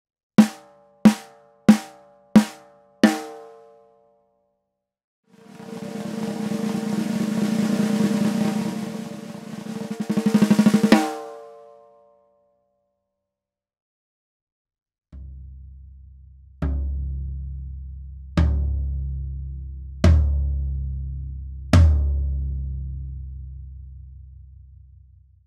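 Snare drum and floor tom played with no muffling on the heads, so every stroke rings out with its full overtones. The snare gets five single strokes, then a roll of several seconds that swells in volume. The floor tom follows with a light stroke and four full strokes, each with a long, low ring.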